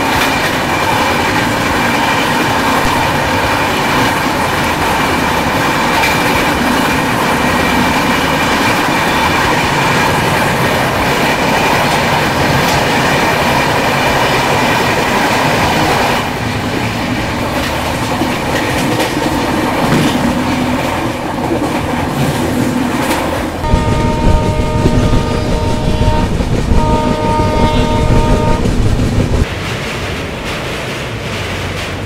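Two Indian Railways express trains passing each other at speed, heard from an open coach door: a loud, steady rush of passing coaches with clickety-clack from the wheels, which eases about sixteen seconds in. Near the end a train horn sounds twice over a louder running rumble.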